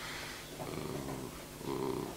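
Faint, low, drawn-out voice sound from a man pausing between sentences, a hesitation hum over quiet room tone.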